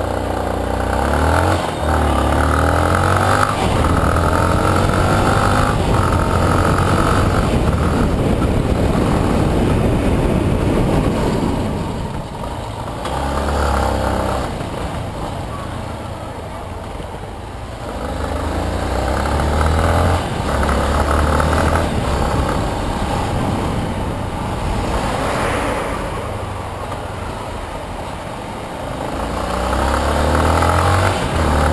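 Yamaha Lander 250's single-cylinder engine pulling away and accelerating up through the gears, its pitch climbing in steps. It then eases off in the middle and picks up again a couple of times in stop-and-go riding, with wind rushing over the microphone.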